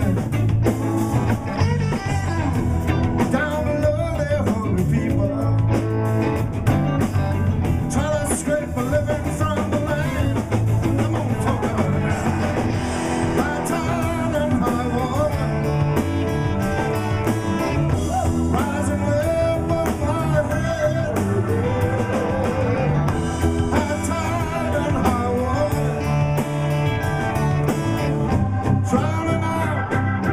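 Live blues-rock band playing: electric guitars, electric bass, drum kit and keyboard, at a steady level with a bending lead line over the rhythm.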